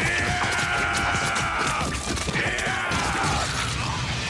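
Anime fight-scene soundtrack: music with two long, high held tones, each dropping off at its end, over a low rumble.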